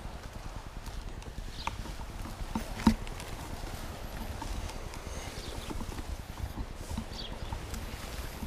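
Baby stroller being pushed over a rough, overgrown dirt path: a steady low rumble from the wheels with irregular knocks and rattles as it jolts over the ground, the sharpest knock about three seconds in.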